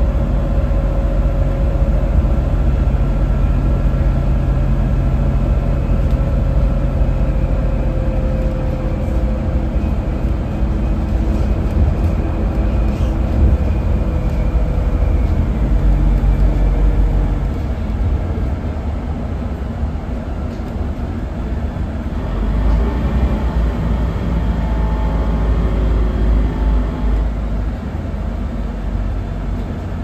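Cabin sound of a Scania N280UB CNG city bus under way: a deep engine and road rumble with a driveline whine that slowly falls in pitch over the first half. The sound eases off past the middle, then a whine rises again for several seconds before easing near the end.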